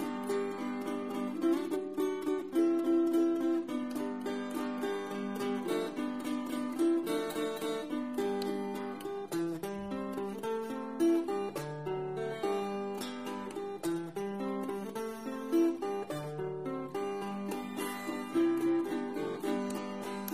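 Ten-string Brazilian viola (viola nordestina) played solo: a melody of single plucked notes on its paired strings, picked at an even pace.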